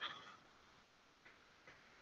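Near silence with a few faint ticks: a computer mouse being clicked and its wheel scrolled.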